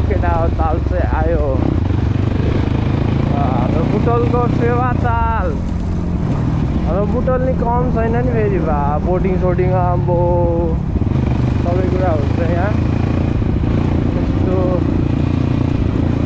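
Dirt bike engine running steadily while riding, with a low, continuous rumble. A person's voice cuts in over it several times.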